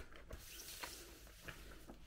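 A few faint taps and light rustling of a cardboard game board being laid into a packed board-game box and pressed down flat by hand.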